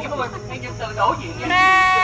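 A lamb bleating once near the end, a single high, steady call of about half a second, over people talking.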